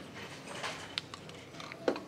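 Quiet room tone with a few light clicks, one sharp click about a second in and a brief tap near the end.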